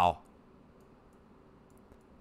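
The end of a man's spoken word, then quiet room tone with a faint click or two near the end from a computer mouse.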